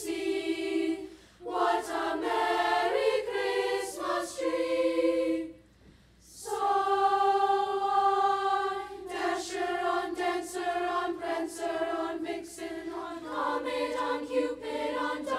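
Children's school choir singing a Christmas song together, phrases broken by two short pauses for breath, the second followed by a long held note.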